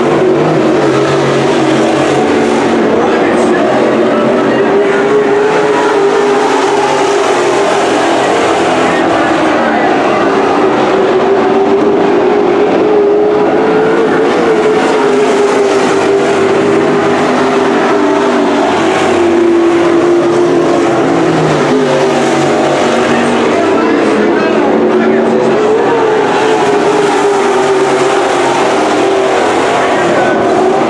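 A field of WISSOTA Super Stock dirt-track race cars running under power, their V8 engines a continuous loud drone whose pitch wavers up and down as the cars work around the oval.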